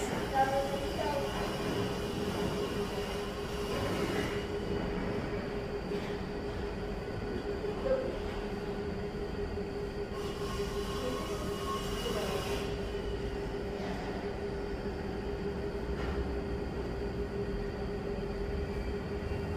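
Steady mechanical hum with one constant mid-pitched tone under a low hiss, with a few brief louder bursts of hiss.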